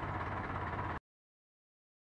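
Faint steady background noise with a low hum from the camera microphone, which cuts off to total silence about a second in.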